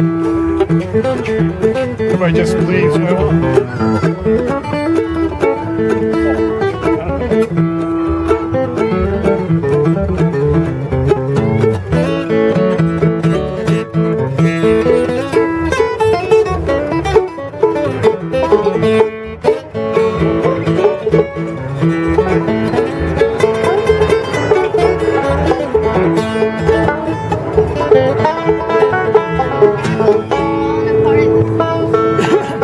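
Acoustic bluegrass jam: mandolin, banjo, acoustic guitar and upright bass playing a tune together.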